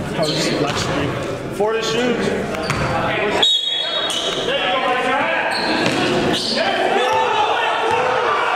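A basketball bouncing on a gym floor amid indistinct, echoing voices of players and onlookers. The sound drops out briefly a little under halfway through.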